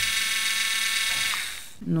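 Tacklife PCD01B cordless mini rotary tool running with no bit at its third and top speed of 15,000 rpm, a steady high whine. It is switched off about a second and a half in and winds down.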